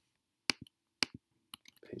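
Computer keyboard keys clicking: a few short, sharp taps, two pairs about half a second apart and a quicker run near the end, as a URL is pasted into a browser's address bar.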